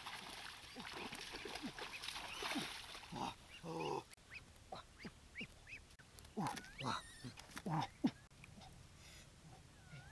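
Splashing in shallow muddy water for the first few seconds, then a string of short duck calls scattered through the middle, with one sharp click about eight seconds in.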